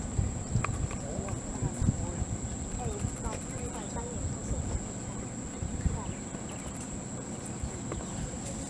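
Outdoor ambience: a low rumble of wind on the microphone, faint distant voices in short snatches, and a thin steady high-pitched whine throughout.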